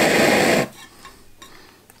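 Optimus Polaris Optifuel multifuel stove burning on canister gas, a steady rushing roar that cuts off suddenly about two-thirds of a second in as the fuel valve is closed and the flame goes out.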